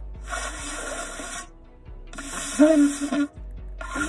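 Shofar blown in two short attempts that are mostly rushing breath. The second catches a brief low note a little over two and a half seconds in, then breaks off.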